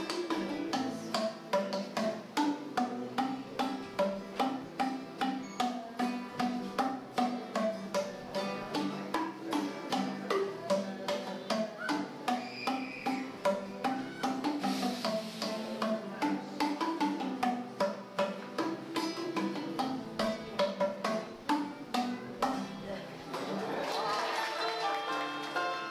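Vietnamese t'rưng, a hanging bamboo xylophone, played with two mallets: quick, rhythmic melodic runs of struck bamboo notes, several strikes a second. Applause begins right at the end.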